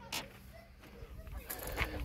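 Quiet outdoor background with a few faint, short bird calls.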